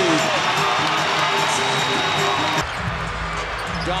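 Basketball arena crowd noise with music running under it. About two and a half seconds in it cuts sharply to a quieter arena, where a basketball is dribbled on the hardwood court.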